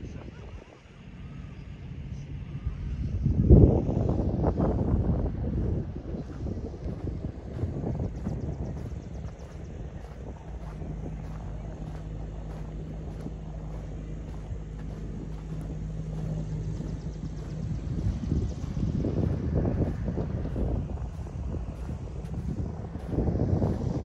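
Wind buffeting the microphone in gusts, strongest a few seconds in and again near the end, with a faint steady low hum through the middle.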